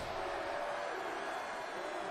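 Steady background noise from the TV episode's soundtrack, with a faint held tone.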